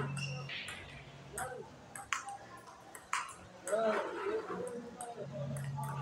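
Table tennis ball clicking off the paddles and the table in a training drill, a sharp tick about once a second, with voices in the background.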